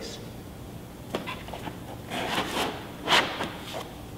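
Plastic-housed laser units being pushed into the foam cutouts of a hard carrying case: a few light clicks, a stretch of rubbing about two seconds in, and a short, louder knock-and-scrape about three seconds in.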